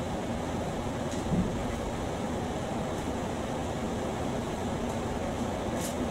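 Steady fan-like hum of room noise, with a few faint light ticks and rustles from a shoelace being threaded and pulled through a sneaker's eyelets.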